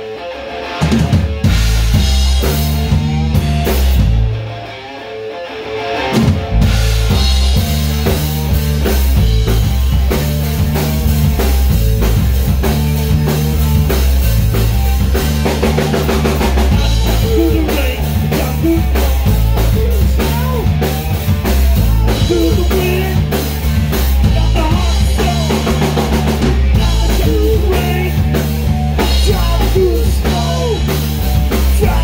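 Rock band playing live in a rehearsal room: drum kit, bass guitar and electric guitar at full volume. The playing drops out briefly twice in the first six seconds, then the band plays on without a break.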